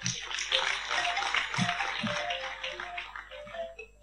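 An audience applauding, with music playing underneath. The clapping thins out shortly before the end.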